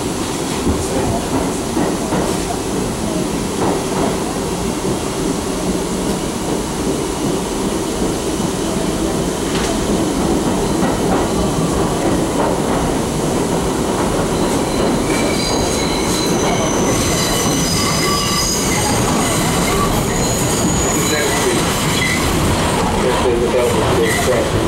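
Interior of a 1985 R62A subway car running through the tunnel: the steady rumble of wheels on rail under a constant low hum. About fifteen seconds in, a high metallic squeal from the running gear sets in and lasts several seconds.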